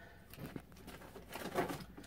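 Faint rustling and light knocks of small packets of sewing thread being picked up and handled, in a series of short scuffs.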